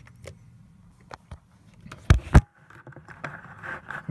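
Handling noise: a few faint clicks, then two heavy thumps about two seconds in, a quarter second apart, followed by soft rustling as the camera and recording device are moved.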